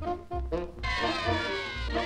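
Cartoon orchestral score with a few short notes over low thumps, then about a second in a chorus of cartoon hens breaks into wavering cackling laughter over the music.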